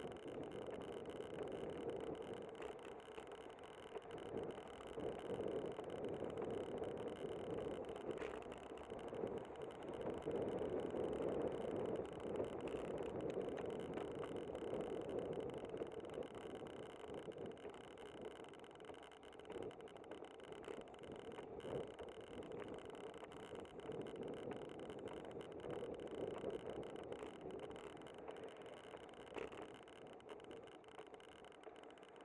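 Steady noise of a bicycle ride on city pavement picked up by a bike-mounted camera: wind and tyre noise that swells and eases, with a couple of faint clicks.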